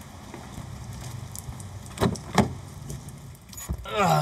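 Footsteps and rustling on a wet path, then two sharp clacks close together about two seconds in and a few clicks near the end as a car's driver door is opened and someone climbs in.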